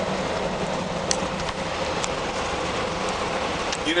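Steady engine and road noise heard from inside a moving coach, with a faint low hum and two faint clicks about one and two seconds in.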